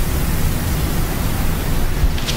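Steady background hiss with no distinct events.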